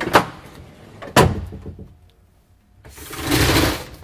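A slide-out compartment tray on a fire truck shoved home, with two sharp clunks about a second apart. Near the end, a Gortite roll-up compartment door is pulled down, rattling for about a second.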